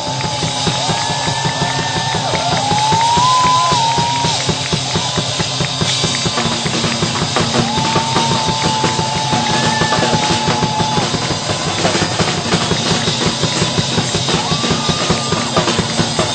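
Acrylic drum kit played continuously in a fast, busy groove of kick, snare and cymbals, over accompanying music that carries a gliding melody line.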